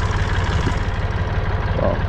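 Small IHC tractor's engine idling steadily, an even low hum with a fast regular beat.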